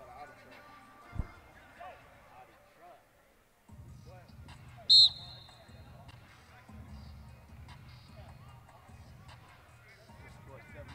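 A referee's whistle blown once, a short shrill blast about five seconds in, over distant voices of players and spectators. A single dull thump comes about a second in.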